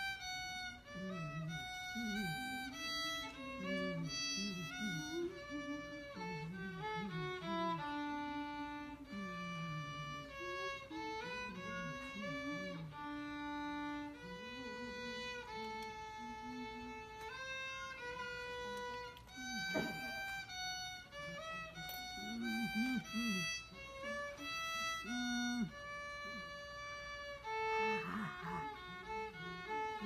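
Solo violin playing a melody of held notes that step from one pitch to the next. Low voices talk underneath, and there is a single sharp knock about twenty seconds in.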